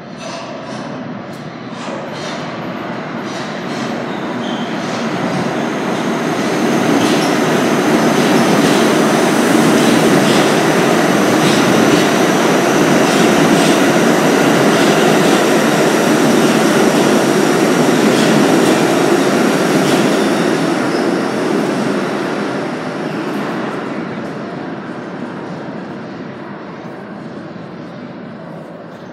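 New York City subway train running through the station on another track without stopping. Its wheels rumble on the rails, building over several seconds, holding loud, then fading away, with clicks from the rail joints and a thin high squeal of the wheels.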